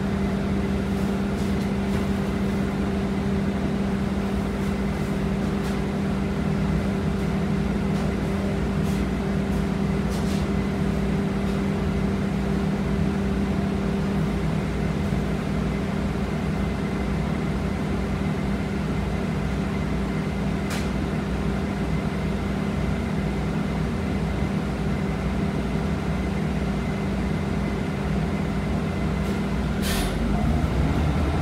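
Cabin sound of a Nova Bus LFS city bus idling: a steady drone with a constant hum that does not change in pitch, plus a few light clicks.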